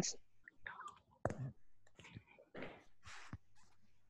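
Faint, indistinct murmured speech and breathy whispering in short scattered fragments, with brief pauses between them.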